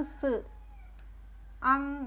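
Speech only: a voice speaking two short utterances, the first with a falling pitch just after the start and the second beginning near the end.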